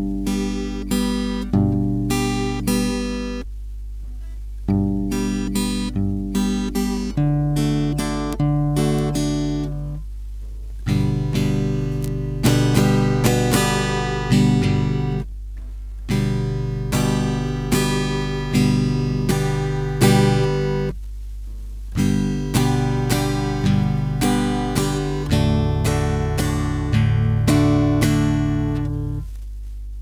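Steel-string acoustic guitar played alone: a fingerpicked pattern of a bass note followed by the third, second and first strings, moving later to steady downstroke strums, with a few short breaks between phrases. A steady low hum runs underneath.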